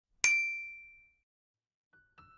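A single bright bell-like ding struck once about a quarter second in, its high ringing tones fading out over about a second, an intro sound effect laid over the animated logo.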